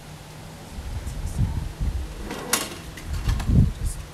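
Phone-microphone handling noise: irregular low rumbling knocks, with a sharp click about halfway through, over a steady low hum.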